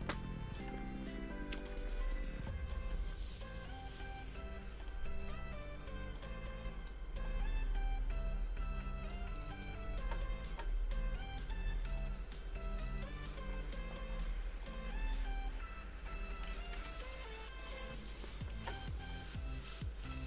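Background music with a moving bass line and melodic notes, playing steadily with no speech.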